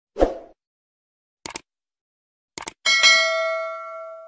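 Subscribe-animation sound effects: a soft thump, then a quick double click about a second and a half in and another a second later. Then a bright bell ding that rings out and fades over about a second and a half.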